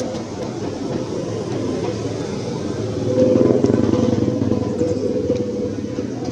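A motor engine running steadily, growing louder about three seconds in and then easing off again, as of a vehicle passing nearby.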